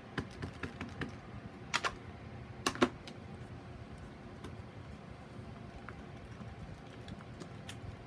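Small taps and clicks from stamping supplies being handled: an ink pad dabbed onto a stamp and the stamp pressed down. Two sharper clacks come about two and three seconds in, and a few faint ticks follow.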